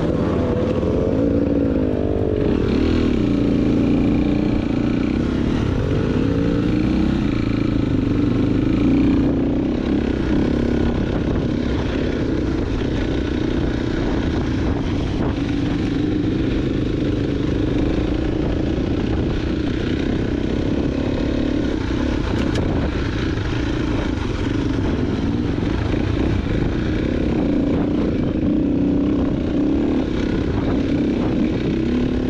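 KTM dirt bike engine under way, its pitch rising and falling continuously as the throttle is worked.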